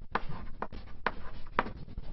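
Chalk writing on a blackboard: about four short, sharp chalk strokes and taps as words are written.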